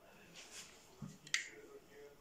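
A glass jar being handled: a dull knock about a second in, then a sharp, bright click of the glass touching something hard.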